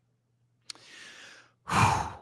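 A man's short mouth click, then an audible breath, a sigh, lasting under a second, before his voice starts again near the end.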